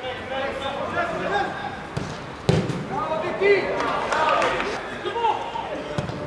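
Footballers shouting to each other across the pitch, with the sharp thud of a football being kicked about two and a half seconds in.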